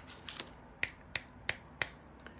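Four sharp finger snaps in a steady rhythm, about three a second, starting nearly a second in, with a couple of softer ticks before them.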